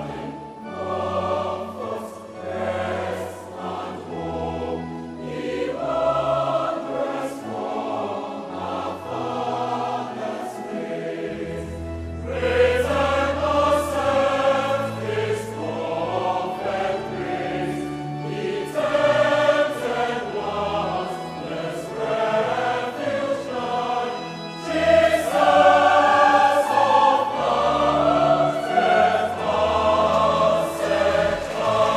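Large mixed choir singing a hymn in harmony, accompanied by Yamaha electronic keyboards holding low sustained bass notes. The singing swells louder about twelve seconds in and again near the end.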